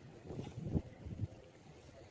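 Wind buffeting the microphone in low, uneven rumbles, strongest in the first second and a bit, then easing to a faint steady rush.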